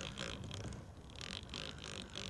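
Quiet background noise with a few faint, soft rustles; no distinct sound event stands out.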